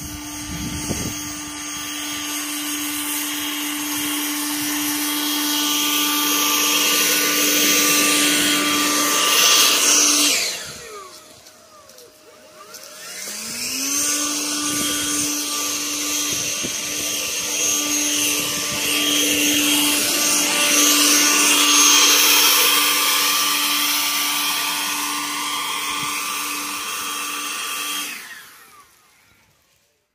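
Battery-powered electric garden tool motor running at a steady high speed. It is released about ten seconds in and winds down, then is triggered again a few seconds later, spins up and runs steadily until it stops near the end.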